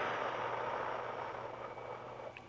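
A woman's long, slow exhale through the mouth, a breathy hiss that fades away over about two seconds.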